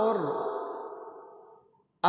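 A man's voice saying one drawn-out word that trails off and fades away, falling to near silence near the end.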